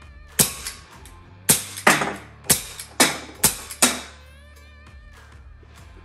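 Bug-A-Salt Shredder, a CO2-powered salt-shooting bug gun, fired repeatedly at drink-can targets: seven sharp cracks in quick succession over about three and a half seconds, with background music underneath.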